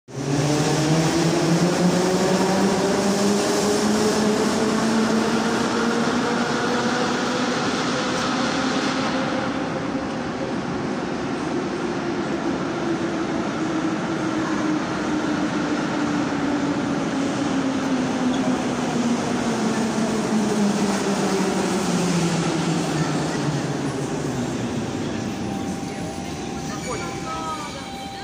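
A Moscow metro 81-717/714 "Nomernoy" train pulls into the station and slows to a stop, with rumbling wheels on the rails and a whine from its electric traction motors. The whine rises in pitch over the first ten seconds or so, then falls steadily as the train slows, fading out just before it halts.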